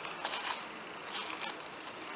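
Light rustling and scratching as hands handle a small felt hat with a stiff tulle ruffle on a tabletop, in a few short soft bursts.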